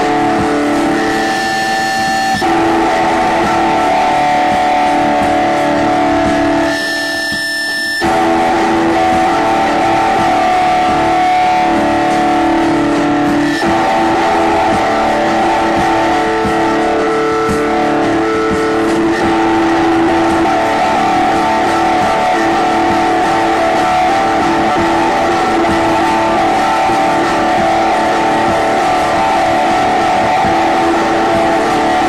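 Live rock band music led by electric guitar, holding droning, sustained notes over a dense, steady wash of sound, with a brief break about seven seconds in.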